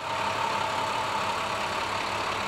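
Ambulance engine running steadily, with a steady high tone over the engine noise.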